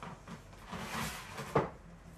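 Things being handled on a desk: a brief rustle, then a single sharp knock, the loudest sound, about one and a half seconds in.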